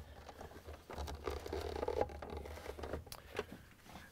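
Plastic refrigerator ice maker assembly being pulled partway out of its mount: faint scraping and rubbing of plastic on plastic with a few small clicks.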